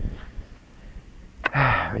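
A steady low rumble, then a sharp click about a second and a half in, followed by a man's breathy exhalation.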